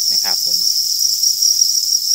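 A dense chorus of many farmed crickets chirping together, a steady high-pitched trill with no breaks.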